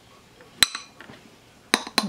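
Metal spoon clinking against a ceramic bowl twice, short ringing taps about half a second in and again near the end.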